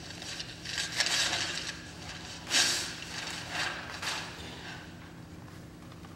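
Brown wrapping paper rustling and tearing as a large gift is unwrapped. It comes in several short crackling rushes, the loudest about two and a half seconds in, then dies away.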